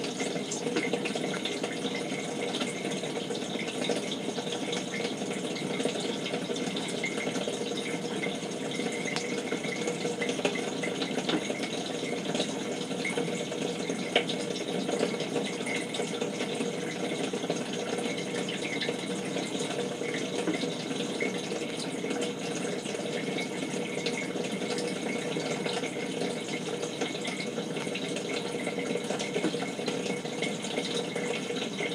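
Kenmore 587.14132102 dishwasher filling: a steady rush of incoming water in the tub, with a faint steady hum under it.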